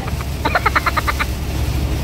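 A woman laughing in a quick run of short 'ha-ha' pulses about half a second in, lasting about a second, over the steady low drone of the truck cab's engine and road noise.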